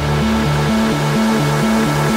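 Background electronic dance music with a bass line that switches back and forth between two notes several times a second.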